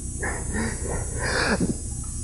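Faint, low murmured vocal sounds from a person during the first second and a half, over a steady low hum.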